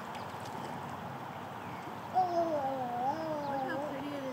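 A high-pitched voice giving one long, wavering, wordless call about halfway through, lasting nearly two seconds, over a steady background hiss.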